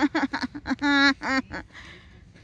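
A person's voice making a quick run of short, wordless vocal sounds, one held longer about a second in, then stopping. The sounds are loud and pitched.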